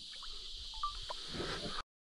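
Faint riverside ambience: a steady high-pitched insect drone with a few faint small knocks, cutting off abruptly to silence near the end.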